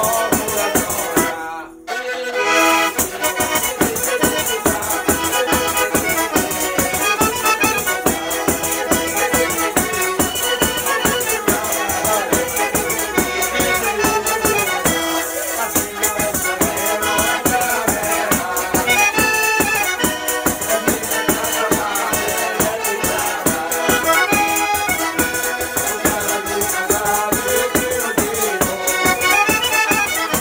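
Calabrian folk music played on an organetto (diatonic button accordion), with a tambourine beating a steady rhythm, a bowed Calabrian lira, and a man singing. The sound cuts out briefly about two seconds in.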